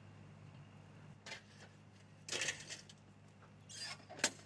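Faint clicks and rattles of a pneumatic pressure-band clamp being handled and released on a pipe joint: three short bursts, the loudest about halfway through, over a low steady hum.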